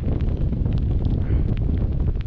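Strong wind buffeting a GoPro Hero 8's microphone: a steady, loud low rumble with a fainter hiss above it.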